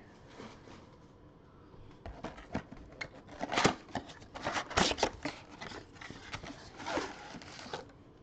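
A cardboard Panini Prizm football mega box being opened and its packs pulled out by gloved hands: irregular rustling, scraping and crinkling of cardboard and pack wrappers, starting about two seconds in.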